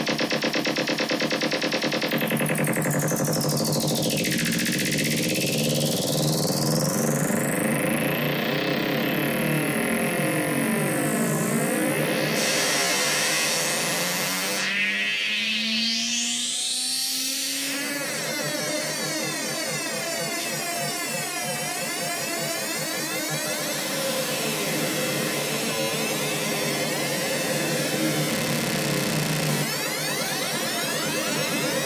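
Octave The Kitten II monophonic analog synthesizer holding one buzzy, continuous tone while its modulation and filter sliders are moved by hand. The tone colour sweeps slowly up and down, and around the middle a few gliding pitch lines rise through it.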